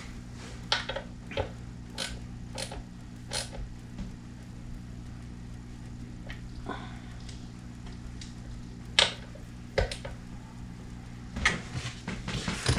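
Scattered light clicks and taps, about a dozen spaced unevenly, the sharpest about nine seconds in, from small tools and knob hardware being handled while the loose controls of an electric guitar are tightened. A steady low electrical hum runs underneath.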